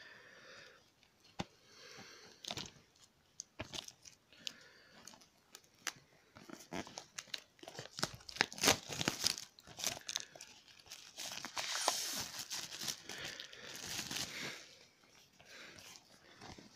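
Plastic shrink-wrap being torn and peeled off a DVD case by hand. A few scattered clicks and light crackles come first, then steady crinkling and tearing from about six seconds in, which dies away near the end.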